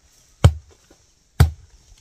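Two sharp chopping blows on wood, about a second apart.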